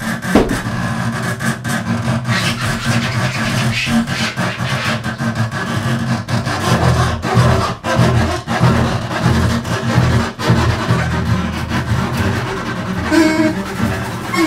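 Free-improvised double bass and drums: low upright-bass notes under a dense run of clicks, knocks and rubbing on the drums. Near the end a few short pitched notes come in over it.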